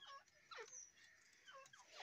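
Near silence with a few faint, short squeaky calls from caged birds, several of them falling in pitch.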